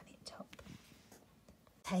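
Faint rustle of a picture-book page being turned.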